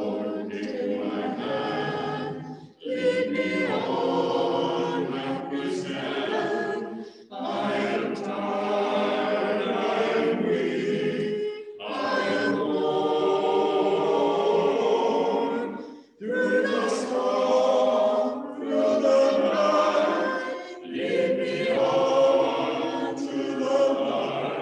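Small mixed group of voices singing a hymn together, in phrases of about four to five seconds with short breaths between them.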